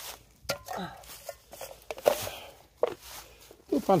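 A string of short rustles and light knocks from footsteps and movement in dry fallen leaves, with faint muffled speech in the background.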